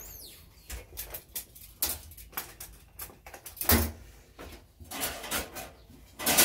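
Scattered clicks and knocks of metal handling at a Weber Summit Charcoal kettle grill as its hinged steel lid is lowered shut, with one louder knock about halfway through.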